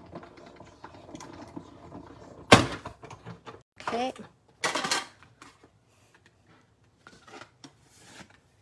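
Stampin' Up Cut & Emboss machine being hand-cranked with a plate stack and thick 3D embossing folder rolling through: a low, steady grinding for about two and a half seconds, then one sharp, loud knock. A brief rustle and scrape of plates and cardstock follows a couple of seconds later.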